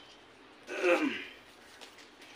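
A man clears his throat once, about a second in: a short vocal sound that falls in pitch.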